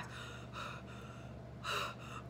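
A woman breathing audibly, twice: a soft breath about half a second in and a stronger one near the end, taken while her heart is racing.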